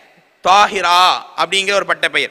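Only speech: a man lecturing, starting again after a brief pause about half a second in.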